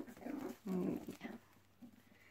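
Five-week-old Cavalier King Charles Spaniel puppies play-fighting, making short vocal sounds: two in the first second and a brief one near the end.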